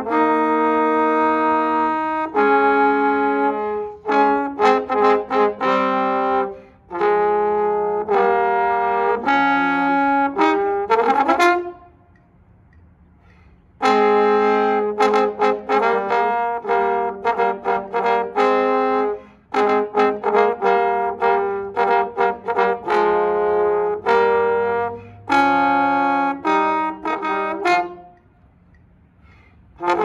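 Two trombones playing a duet in phrases, with long held notes and runs of short notes. The first phrase ends in a rising slide about twelve seconds in. There is a pause of about two seconds after it and another near the end.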